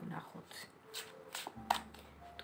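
A deck of tarot cards being shuffled by hand: soft sliding of cards, with a few short, sharp flicks as cards slap together.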